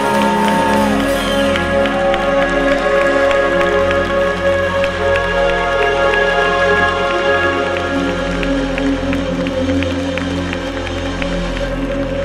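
Live pop band playing on stage: sustained chords over a steady run of light ticks, with a held note from the female singer fading out about a second in.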